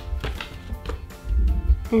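Paper leaflet handled and shifted in the hands: a scatter of short taps and rustles with dull low bumps of handling noise.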